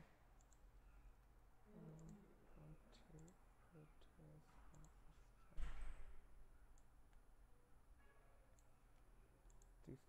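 Quiet computer mouse clicks at scattered moments, with one low thump about five and a half seconds in.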